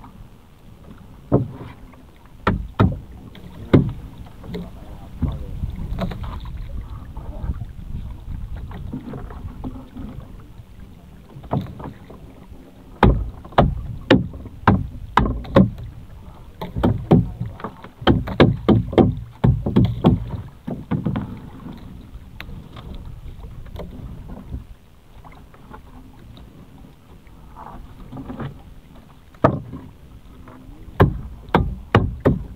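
Irregular knocks and clatter, bunched in a busy run through the middle, over a steady low rumble.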